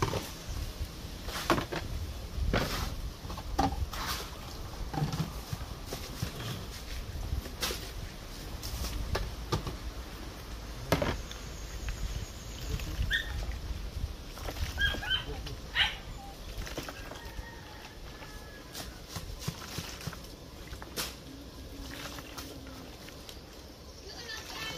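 Hands mixing and kneading grated-carrot dumpling dough in a plastic basin, with scattered soft knocks and slaps throughout. A few short bird calls come in about halfway through.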